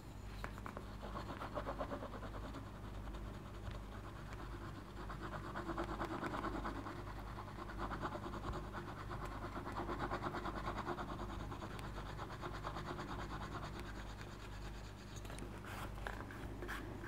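Wooden edge burnisher rubbed rapidly back and forth along the top edge of a veg-tan leather wallet: a steady, fast, scratchy rubbing as the edge is burnished smooth, swelling a little louder in stretches.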